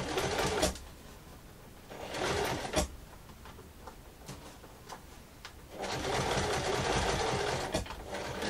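Domestic electric sewing machine stitching a zipper tape to fabric with a zipper foot. It runs in stop-start spurts: briefly at the start, again about two seconds in, then a longer run of about two seconds near the end.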